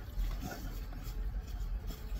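Low, steady hum of a parked car's cabin, with faint chewing and mouth sounds of people eating.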